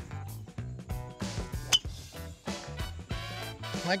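Background music with a steady beat. A single sharp crack a little under two seconds in: a driver striking a golf ball off the tee.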